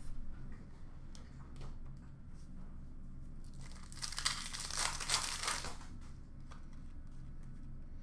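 A trading-card pack wrapper being torn open and crinkled: a short crackling burst of under two seconds about four seconds in, after a few light clicks of cards being handled, over a faint steady room hum.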